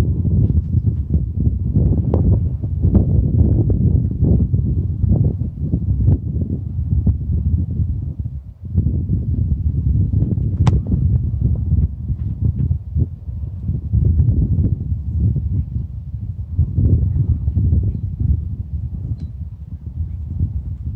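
Wind buffeting the camera microphone, a heavy, gusting rumble, with a few sharp knocks through it, the clearest about ten and a half seconds in.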